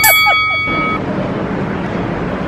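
A steady electronic beep from a tyre air-pump machine, with a woman laughing over it; the beep cuts off about a second in. Street and traffic background noise follows.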